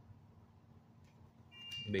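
Quiet room tone with a faint low hum, then a steady high-pitched electronic beep comes in about three-quarters of the way through.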